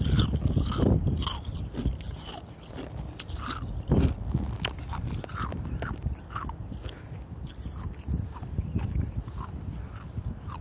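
Close-up crunching of nugget-style 'hospital' ice being bitten and chewed, a quick run of crisp cracks with one loud crunch about four seconds in.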